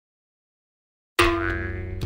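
Silence for a little over a second, then a sudden pitched sound-effect hit with many overtones that rings and slowly fades, running into background music.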